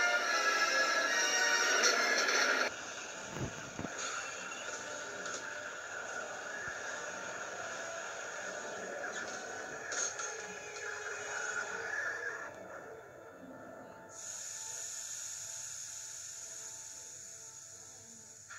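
Animated-film soundtrack played through a computer speaker: dramatic film score music, loudest for the first few seconds, then quieter and continuing with a couple of abrupt changes near the two-thirds mark.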